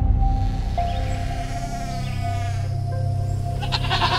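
Soft background music with a low drone and long held tones. Near the end a goat bleats loudly.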